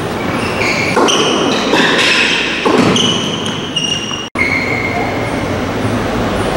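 Tennis shoes squeaking in short high-pitched squeals on a hard indoor court, with two louder hits of a racket on the ball about one and nearly three seconds in, over a steady hall noise. The sound cuts out for an instant about four seconds in.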